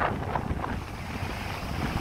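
Sea breeze buffeting the microphone in uneven low rumbles, with surf washing onto the beach underneath.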